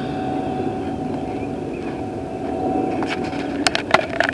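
Steady drone of a vehicle engine running, with a faint constant tone over a broad rumble, and a few sharp clicks near the end.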